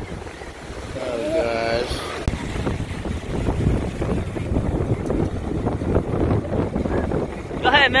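Ocean surf washing around the shallows, with wind buffeting the microphone in a rough, uneven rumble. A short laugh comes about a second in.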